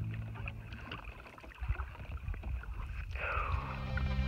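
Double-bladed paddle dipping and pulling through calm lake water beside a decked canoe, with irregular splashes and drips from the blades.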